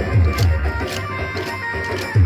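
Folk music for a kolatam stick dance. Two deep drum strokes with a falling pitch come early, and sharp wooden clacks of the dancers' sticks cut through it.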